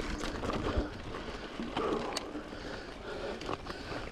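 Mountain bike rolling over a dirt singletrack: steady tyre and trail noise with a few scattered clicks and rattles from the bike, and the rider breathing hard about two seconds in.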